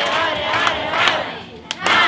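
A crowd of people singing and shouting together, with a few hand claps.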